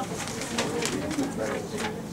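Low muttered speech and breath close into a handheld microphone, with a few short sharp noises.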